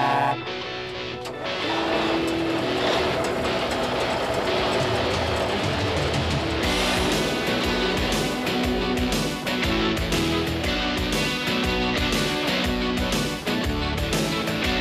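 A truck's air horn blast cuts off just after the start, followed by guitar-led theme music that builds and is joined by a full band with a driving beat about seven seconds in.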